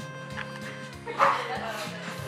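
Background music, and about a second in a short, sharp, loud pop as a plastic straw is stabbed through the sealed plastic film lid of a bubble tea cup.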